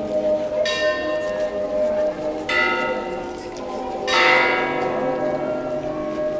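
A church bell struck three times, about every two seconds, each stroke ringing on and fading: the bell tolling for a funeral.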